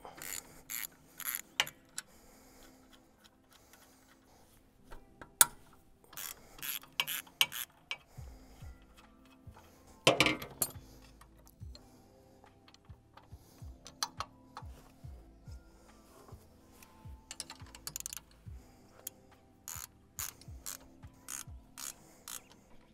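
Ratcheting wrench clicking in short runs as bolts on a tractor's loader valve mount are loosened and tightened, with metal clinks as the steel bracket and bolts are handled and a louder clank about ten seconds in.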